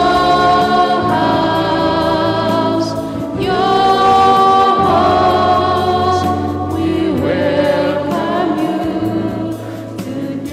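A church choir singing a hymn in long held notes, over a steady low accompaniment.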